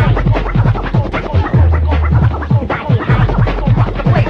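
Early-1990s rave DJ mix playing: a fast, busy breakbeat over long, deep bass notes.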